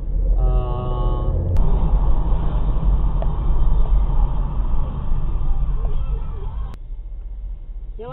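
A car horn sounding steadily for about a second near the start, then cutting off. After that, steady road and engine rumble of a moving car as picked up by a dashcam inside the cabin, which stops abruptly near the end.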